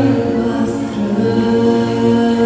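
A young girl singing into a hand-held microphone, amplified, holding long notes with music behind her.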